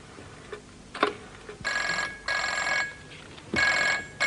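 Desk telephone ringing in a double-ring pattern: two rings close together, then the next ring starting near the end. A single click sounds about a second in.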